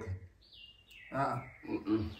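A short lull, then a thin high tone sliding down in pitch, followed by a brief vocal sound from a person.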